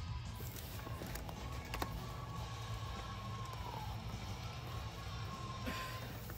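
Music playing faintly in the background, with one long held note that dips slightly in pitch a little past the middle. A light click about two seconds in.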